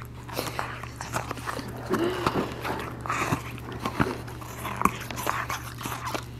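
French bulldog chewing a knobbly rubber chew toy, with irregular clicks of teeth working the rubber.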